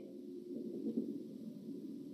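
The guest's phone line dropping out mid-sentence during a call-in interview: the voice is gone, leaving only faint, low line noise.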